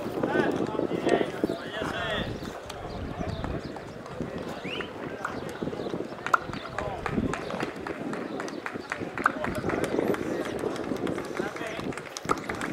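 Several men's voices calling out and talking across an open football pitch, overlapping and unintelligible at a distance.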